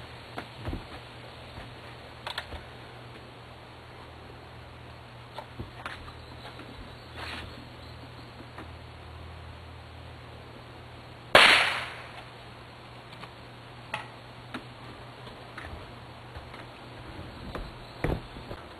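A single shot from a .22 pellet gun, one sharp crack about eleven seconds in, hitting a shaken beer can. A brief hiss trails off after it as the pressurised beer sprays out of the holed can.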